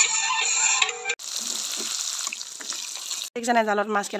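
Music plays for about a second and then cuts off abruptly. Then comes a steady rushing hiss of running water for about two seconds. A person's voice starts near the end.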